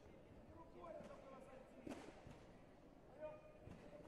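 Faint voices of people talking, with one sharp thud about two seconds in.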